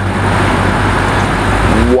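A car driving slowly past close by, its engine running low and steady with tyre noise, over city traffic. The low engine sound grows a little near the end.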